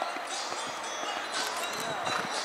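Horse's hooves thudding on a sand arena at the canter, under indistinct background voices.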